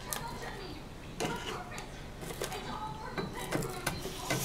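Manual hand-cranked can opener being turned around the rim of a tin can, cutting the lid with a series of irregular clicks and crunches.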